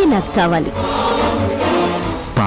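Background music with choir-like voices, after a woman's voice in the first half-second.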